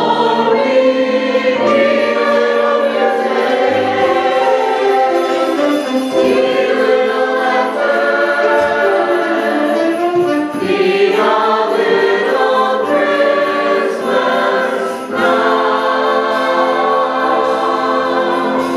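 Stage-musical ensemble cast singing a number together in chorus, many voices on held and moving notes.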